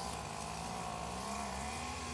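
Steady hum of many honeybees flying around an opened hive, its pitch wavering slightly.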